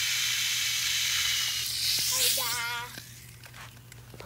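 Water running from a garden hose into the soil of a potted palm, a steady hiss that stops abruptly about three seconds in. A short, high, wavering voice is heard just before it stops.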